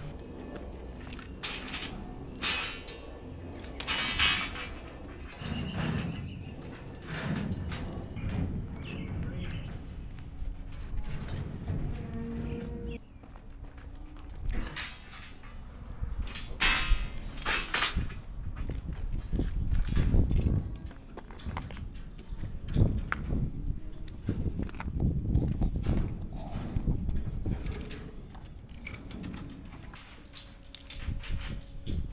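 Irregular clanks, knocks and scrapes of steel rebar being handled and dragged across a concrete footing, with gusts of wind rumbling on the microphone.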